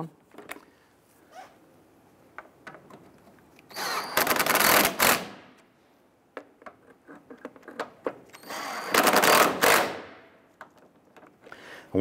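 Cordless impact driver running in two short bursts of about a second and a half each, driving the headlamp assembly's mounting screws snug, with rapid hammering clatter. There are faint clicks and handling noises between the bursts.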